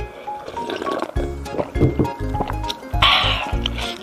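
Background music with a steady beat over a person slurping hot soup broth straight from the rim of a bowl. The loudest slurp comes about three seconds in.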